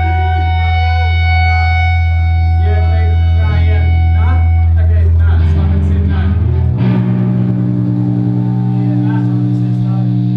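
Electric guitar and bass amplifiers holding loud, sustained, droning notes: a deep low note gives way to a higher held chord about two-thirds of the way through. Voices talk over the drone.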